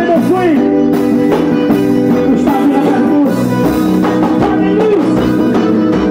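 A forró band playing: sustained accordion chords and melody over a steady zabumba drum beat.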